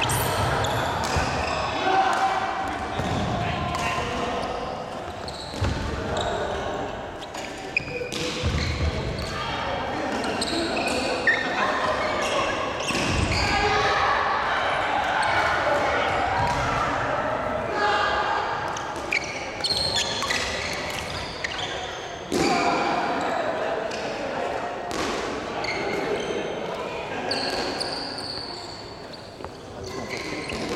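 Badminton being played in a large gymnasium: sharp racket hits on the shuttlecock now and then, and shoes on the wooden court floor, under steady background voices of players talking.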